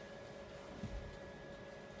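Quiet room tone with a faint steady hum and a soft low thump a little under a second in.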